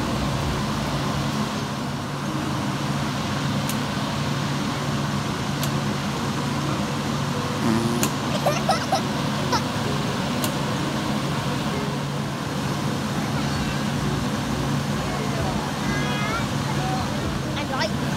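Steady low outdoor hum with faint, distant children's voices calling now and then, and a few light clicks.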